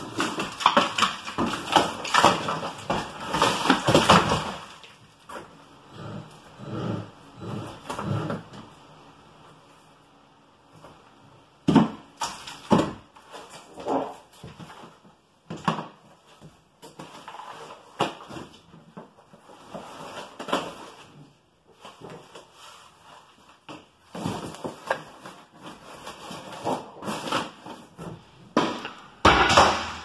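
Old horsehair plaster being pried off wooden lath: a rapid run of cracking, crumbling and falling chunks at first, then scattered separate knocks and scrapes, with another dense burst of scraping near the end.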